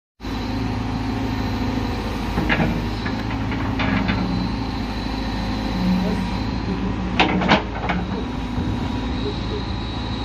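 Caterpillar backhoe loader's diesel engine running steadily while its rear digger bucket works in a trench, with a few sharp knocks, the two loudest about seven seconds in.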